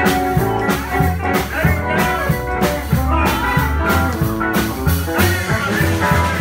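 Live rockabilly band playing an instrumental passage: electric guitars over upright bass and drums, with a steady beat.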